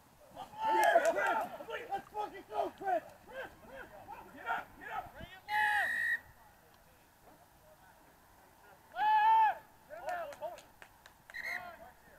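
Men shouting calls across a rugby pitch during play: a burst of overlapping shouts in the first few seconds, then scattered calls, a lull, and one long loud shout about nine seconds in, followed by a few more calls.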